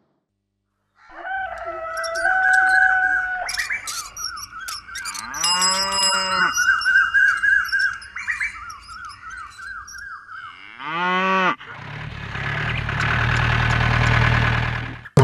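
Village sound effects: birds chirping, with a cow mooing twice, one long moo in the middle and a shorter one later. Near the end a vehicle engine comes in with a loud low rumble.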